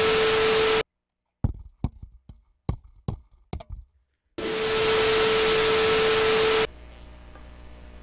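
TV static sound effect, a loud hiss with a steady test tone through it, cuts off abruptly within the first second and comes back for about two seconds just after the middle. Between the two bursts come a handful of sharp, irregular knocks and taps. Faint room tone follows after the second burst.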